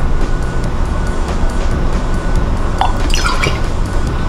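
Background music, with spirit being poured from a bottle into a bar measure; short pouring sounds stand out about three seconds in.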